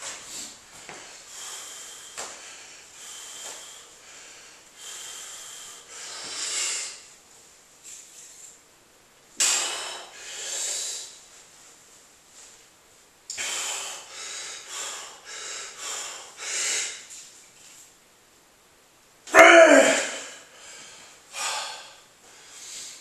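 A man's heavy, forceful breathing and straining exhales while he bends a steel wrench by hand. The breaths come in bursts with pauses between, and the loudest comes near the end.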